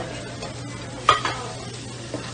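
Food sizzling on a diner's flat-top grill, with a sharp clink about a second in.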